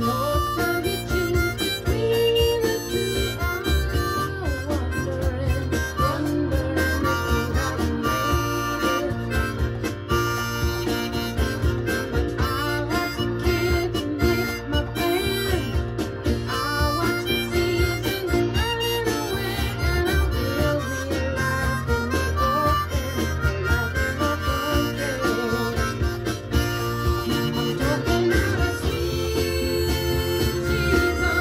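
Harmonica played blues-style, cupped in both hands against a bullet microphone so it comes through amplified, with bending notes over a backing track with a steady low bass and beat.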